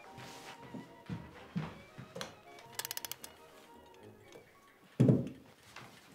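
Soft background music under faint handling noises, with a quick run of about a dozen ratcheting clicks about three seconds in as a wind-up alarm clock is set, and a dull thump at about five seconds.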